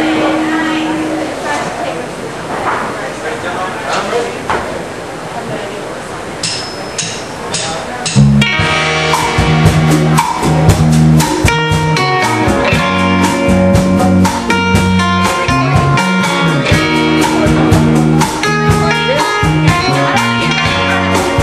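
Live band starting a slow jam. For the first eight seconds there are voices and scattered loose instrument notes, then a few sharp clicks. About eight seconds in, electric guitar, bass guitar and drum kit come in together in a steady, slow groove.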